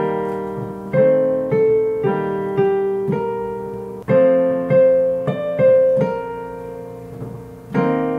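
Digital piano playing a slow melody over held chords, about a dozen notes and chords struck one after another, each ringing and fading. A harmony is being tried out for an ending passage.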